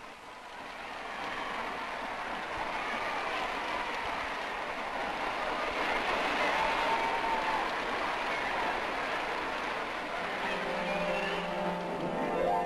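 Early propeller aeroplane engine running, a dubbed newsreel sound effect that swells over the first couple of seconds and then holds steady. Music comes in near the end.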